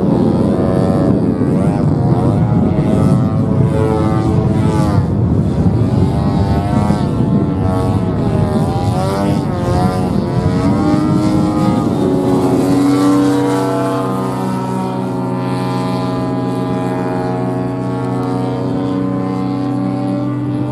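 Radio-controlled propeller model airplane flying overhead. Its engine note rises and falls as it passes and maneuvers, then settles to a steady drone a little past halfway through.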